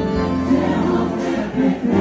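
Live band music with sung vocals over a heavy, steady bass line and regular cymbal-like hits.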